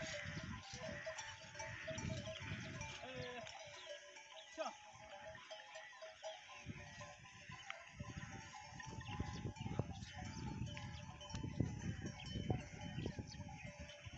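A flock of sheep and goats bleating on and off, several animals calling over one another.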